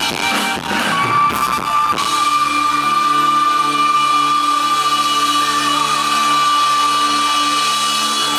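Live band music on stage: busy, percussive playing for the first two seconds, then a long held chord with a steady high note over a slowly pulsing lower tone.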